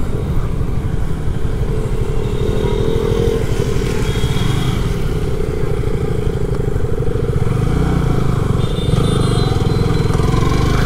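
Yamaha R15 V3's single-cylinder engine running steadily while the motorcycle is ridden at low speed.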